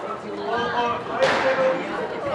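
Voices speaking in a reverberant squash court between rallies, with one sharp knock about a second in.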